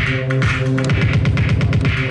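Electronic dance track playing through a Pioneer DJM-2000 DJ mixer, with a steady kick drum. About half a second in, the beat breaks into rapid stuttering repeats, as from the mixer's roll beat effect.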